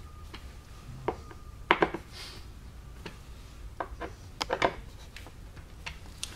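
Hand tools clicking and knocking against the steel swivel-tilt mechanism of a chair as its mounting screws are snugged with a hand screwdriver: a handful of short separate clicks, the loudest a little under two seconds in.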